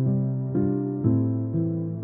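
Slow relaxation piano music, a new note or chord struck about every half second and left to ring.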